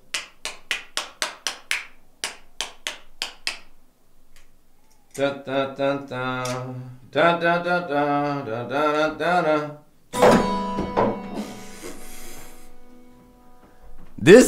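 A run of quick, sharp clicks, about four a second, as the acoustic-electric guitar is handled, then, about ten seconds in, a single strummed chord on the guitar that rings out and fades over two or three seconds, the guitar's pickup running again on a fresh battery.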